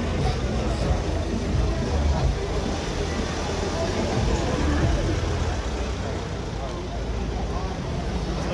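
Street ambience of a crowd of people talking over one another while road traffic passes, with a steady low rumble underneath.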